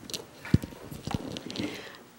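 Footsteps and light knocks of a roomful of people standing and shifting in place, with a sharper knock about half a second in and another just after a second.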